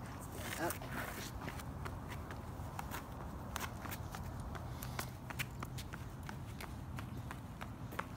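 Footsteps on asphalt: a toddler's small, uneven steps in sneakers and an adult walking alongside, heard as irregular light taps and scuffs.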